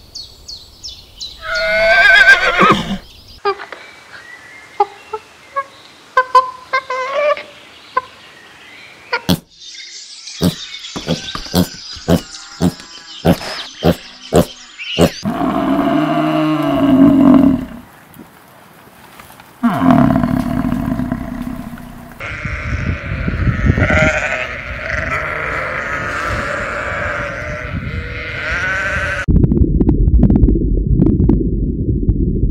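A string of different livestock calls one after another: a horse whinnying near the start, a run of sharp clicks in the middle, then a deep, low buffalo call about halfway through, followed by further animal calls.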